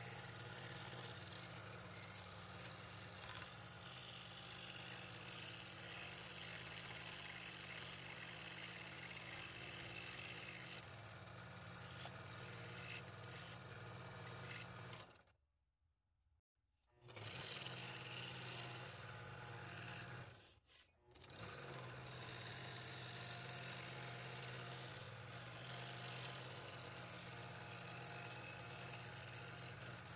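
Scroll saw running and cutting fretwork in 3/8-inch walnut, a steady mechanical hum with the fine blade stroking rapidly. The sound cuts out briefly twice, about halfway through and again a few seconds later.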